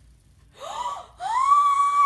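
A young woman's short rising gasp, then a long high-pitched scream of fright that starts a little over a second in, rising quickly and then held.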